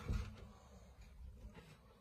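Quiet room tone with a brief soft bump just after the start.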